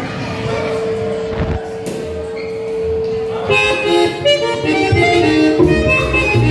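A button accordion holds one steady note, then about three and a half seconds in the band comes in: the accordion plays a quick melody over caja drum and bass guitar, in vallenato style.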